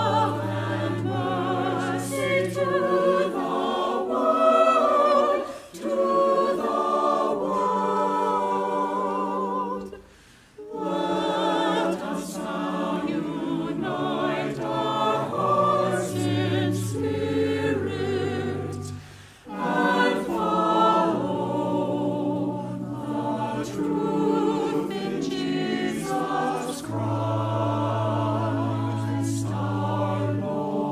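Church choir of mixed men's and women's voices singing, with short breaks between phrases about ten and nineteen seconds in.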